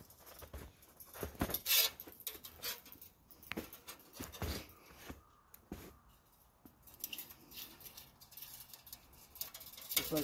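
Scattered scrapes and clicks of a steel wire being handled and fed through a gripple wire joiner, with a few sharper clicks in the first six seconds.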